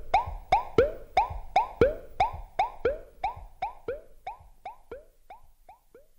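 Synthesised electronic blips in the outro of a rap track, short pitch-bending notes at about three a second that fade out gradually like a decaying echo.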